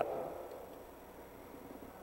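Faint, steady background noise with no distinct event: the last of a man's voice fades out in the first moment, then only a low hiss of ambience remains.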